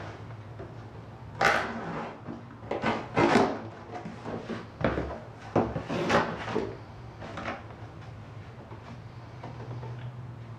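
Cardboard shipping box being opened: the tape along the flaps is cut and the flaps are pulled back, in about five short scraping, rustling bursts of cardboard. After them comes only faint handling.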